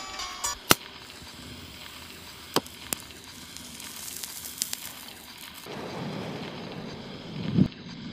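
Background electronic music: a few sharp clicks over a soft hiss, giving way about six seconds in to a denser, lower rumbling texture with one louder swell near the end.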